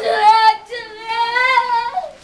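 A young boy crying in long, high wails: a short one at the start, then one held for over a second.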